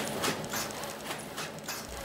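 Film-packaging and shrink-wrapping machine running, a quick, irregular clatter of clicks about three to four times a second.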